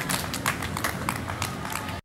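Scattered applause from a small outdoor audience after the song ends: individual sharp hand claps at an uneven pace over a low background rumble, cutting off suddenly at the end.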